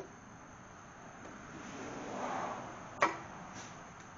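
A tube being fitted down over a connecting rod inside a Mopar 400 engine block, to keep the rod off the block while a stuck piston is driven out: soft handling noise, then one sharp knock about three seconds in, with a much fainter tap just after.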